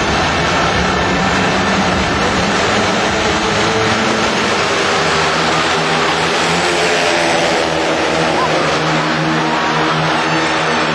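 Four speedway bikes' 500cc single-cylinder engines revving hard at the start and then racing together in a pack, a loud continuous blare, with their pitch lines standing out more clearly from about four seconds in.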